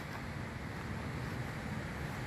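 Steady low rumble of wind on the microphone, with no distinct events.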